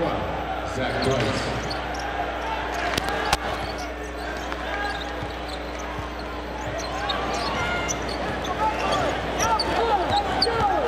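A basketball being dribbled on a hardwood court over arena crowd noise and voices, with two sharp knocks about three seconds in and short sneaker squeaks near the end.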